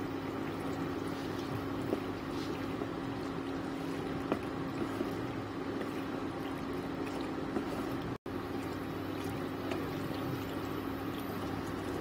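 Wooden spatula stirring macaroni through thick cheese white sauce in a non-stick pan, a soft wet, sloppy churning, over a steady low hum. The sound drops out briefly about eight seconds in.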